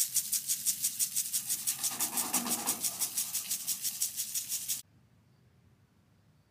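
Lawn sprinkler, most likely an impact type, ticking rapidly and evenly at about eight strokes a second as it throws water over the lawn. It cuts off suddenly near the end.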